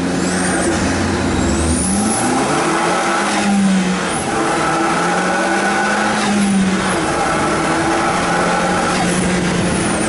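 Zenos E10 S's turbocharged 2.0-litre Ford EcoBoost four-cylinder pulling through the gears: the engine note rises, drops at a gear change about four seconds in, rises again, drops at a second change about seven seconds in, then holds steady. A brief rush of noise comes with each change, and wind noise runs through it from the open cockpit.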